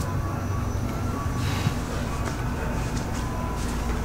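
Steady low hum and rumble of background noise with no distinct event.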